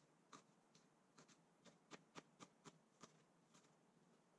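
Faint knife taps on a plastic cutting board while chopping, about nine soft, uneven knocks that come closer together around the middle.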